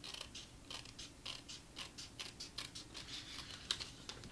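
Scissors snipping through patterned paper in short, quick cuts, about four a second, trimming it along the edge of an envelope flap. One snip near the end is sharper than the rest.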